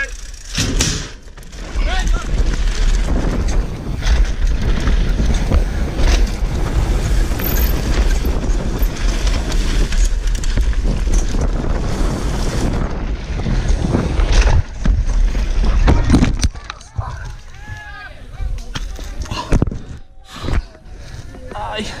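Helmet-camera ride noise from a mountain bike descending a dirt downhill trail: loud wind rush on the microphone with a rumble of tyres and frame over the rough ground. About 16 s in the rush cuts away sharply, and a few short voice sounds follow.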